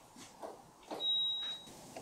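A single high electronic beep, held steady for under a second, starting about halfway through, from a kitchen appliance. A few light clicks and knocks of handling come before it.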